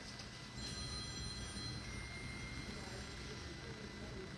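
Faint airport-terminal room noise: a low steady rumble of the hall, with thin high electronic tones for about a second starting half a second in, then a lower one for about another second.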